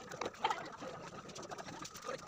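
Faint bird calls with a few small ticks.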